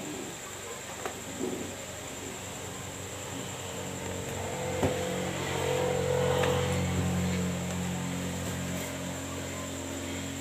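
A motor vehicle engine running steadily, growing louder through the middle and easing off toward the end, with one sharp knock about five seconds in.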